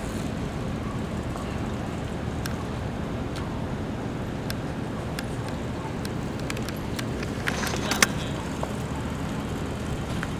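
Outdoor street noise: a steady low rumble with scattered light clicks, and a short cluster of clicks ending in one sharp click about eight seconds in.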